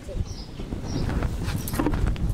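A few light knocks and clicks as a plastic bucket and a clay pot are set down on the ground, over a steady low rumble of wind on the microphone.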